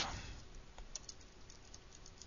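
Computer keyboard being typed on: a quick run of light, separate key clicks, entering a line of code.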